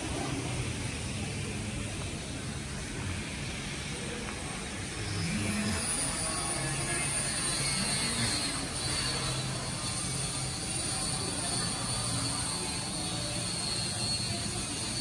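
Outdoor ambience of a narrow city lane: a steady low hum of traffic and engines with general street noise. About five seconds in it grows a little louder and a thin, steady high whine joins it.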